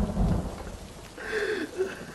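A deep thunder-like rumble with a rain-like hiss, dying away within the first half second. Then a man gives a short strained cry that falls in pitch, a little past the middle.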